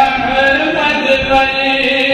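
A man's voice chanting an Urdu nazm (devotional poem) in a melodic recitation style, holding long notes that slide slowly between pitches.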